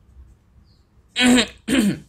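A man clearing his throat, two short rasping bursts about a second in.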